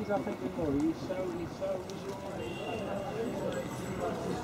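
Indistinct voices of people talking at a distance, with no words standing out.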